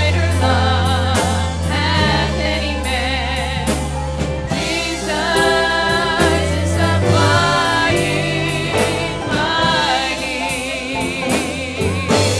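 Gospel worship song sung by a choir with a live band: the voices hold wavering notes over a deep bass line and regular drum and cymbal hits.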